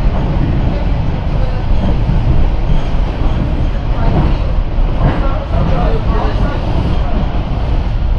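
Train running at speed, heard from inside the carriage: a loud, steady rumble of wheels on the rails.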